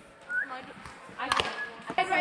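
A pitched softball striking with one sharp smack about a second and a half in, with a brief ring after it.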